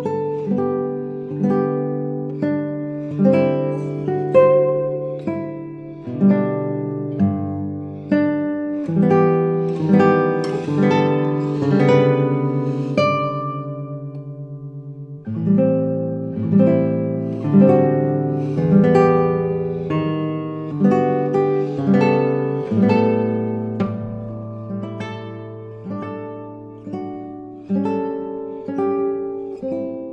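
Solo classical guitar, nylon strings fingerpicked, playing a slow, lyrical arrangement of Scottish traditional tunes: a melody line over bass notes, each note struck and then left to ring away.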